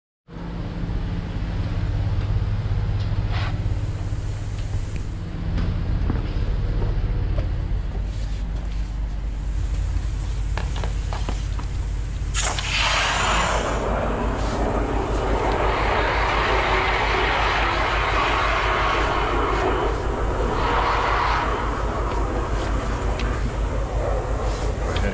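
A drain jetter's engine runs steadily. About twelve seconds in, a loud rushing hiss of the water jet joins it as the jetter hose is fed into the drain pipe.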